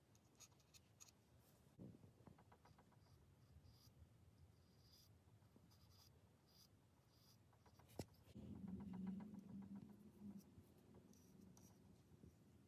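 Faint, soft scratching of a paintbrush dabbing and stroking paint onto a small wooden chair piece, in short repeated strokes. A single sharp click comes about eight seconds in, followed by a faint low hum for a couple of seconds.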